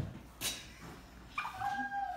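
Birthday candles being blown out: a sharp intake of breath, then an airy puff of blowing about half a second in. This is followed by a short, high-pitched squeal held on one note, which drops in pitch at the end.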